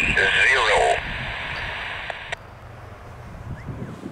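A voice transmission over a radio scanner, thin and hissy, ends about a second in. The radio hiss carries on and cuts off abruptly about two and a half seconds in, leaving faint outdoor wind and a low distant rumble.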